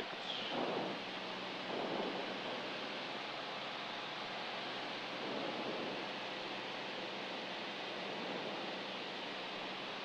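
Steady engine and propeller noise of a single-engine light aircraft descending on approach, an even hiss with a faint low hum under it.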